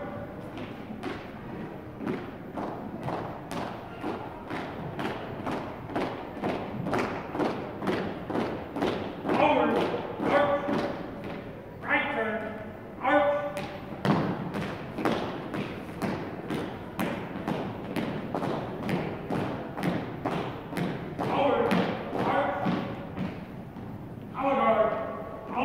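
Marching footsteps of a color guard, sharp heel strikes on a hardwood gym floor at an even pace of about two steps a second. A voice calls out briefly three times, near the middle and near the end.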